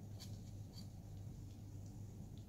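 Light ticks and scratches of a small metal palette knife against the canvas and table, twice in the first second, over a faint steady low hum.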